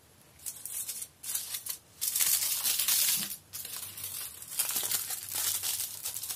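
Aluminium kitchen foil crinkling in irregular bursts as it is handled and folded around a fingertip, loudest about two seconds in, with a brief pause just after three seconds.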